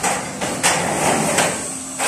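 Three sharp knocks, about two-thirds of a second apart, like hammer blows on a building site.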